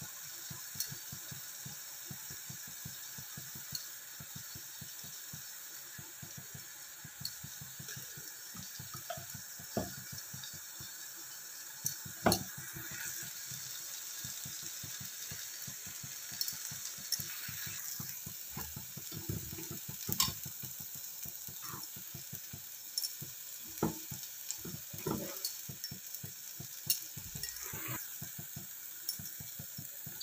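Onion-tomato masala sizzling in oil in a pan on a gas stove, a steady hiss, with scattered knocks and scrapes of a spoon stirring and tapping against the pan; the loudest knock comes about twelve seconds in.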